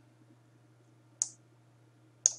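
A single computer mouse click about a second in, over a faint steady low hum.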